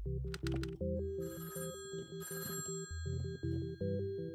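A telephone bell rings twice, two short rings about a second apart, over a steady synthesizer music bed.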